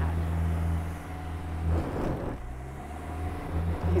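2021 Subaru Crosstrek Sport's 2.5-litre naturally aspirated engine working hard up a soft silt hill, all-wheel drive with wheels slipping and digging in. The engine note is steady, dips a little after halfway and picks up again near the end.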